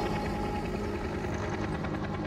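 Helicopter flying overhead, its rotor beating steadily, over held notes of a music score.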